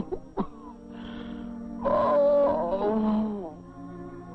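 A cartoon man's voice groaning in pain from a sick stomach: a short groan near the start, then one long moan about two seconds in that sinks in pitch as it ends, over a soft orchestral underscore.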